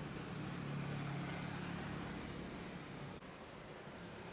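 Street ambience with steady traffic noise and a low engine hum that swells and fades. About three seconds in, the background changes and a faint, thin high tone comes in.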